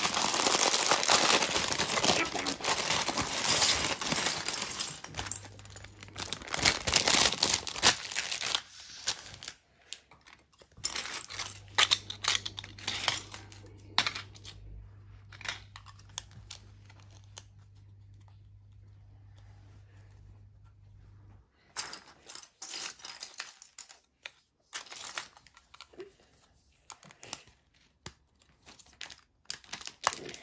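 A clear plastic bag of LEGO pieces crinkling as it is torn open and handled, with plastic pieces clattering onto a wooden tabletop. Later come scattered clicks of LEGO pieces being picked up and handled, with a quieter stretch in the middle.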